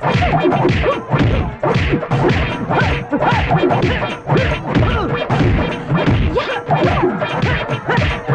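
Film-fight punch sound effects: a rapid, unbroken string of blows landing, several a second, over background music.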